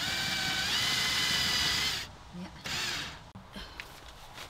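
Cordless drill-driver running for about two seconds as it drives a screw into a plywood panel, its whine stepping up in pitch partway through, then stopping.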